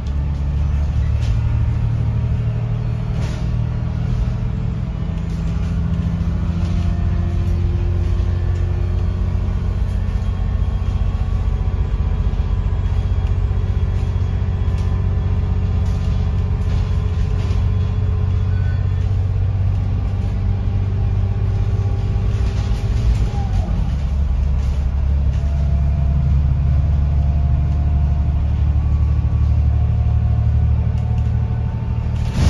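Interior sound of an Alexander Dennis Enviro500 diesel double-decker bus on the move, heard from the upper deck: a loud, steady low engine and drivetrain drone with some whining tones and occasional light rattles from the body and fittings. About three-quarters of the way through, the low drone shifts in pitch as the bus changes speed or gear.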